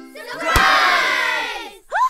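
A group of cartoon voices shouting together in a cheer, set off by a sharp crack about half a second in; the many voices fall in pitch and fade out near the end.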